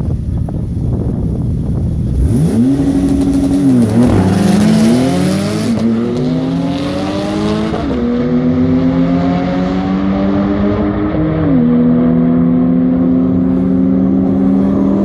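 Porsche 911 Turbo's twin-turbo flat-six launching hard down a drag strip: after a low rumble the engine note climbs about two and a half seconds in, then drops and climbs again at four upshifts, at roughly 4, 6, 8 and 11.5 seconds. The car is running away from the start line, so the sound grows more distant toward the end.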